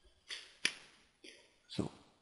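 A narrator's breath noises and a mouth click close to the microphone: a short breath, a sharp click, then a heavier breath near the end.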